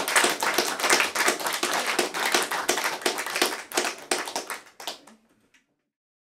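Audience applauding, the clapping thinning out and fading away about five seconds in.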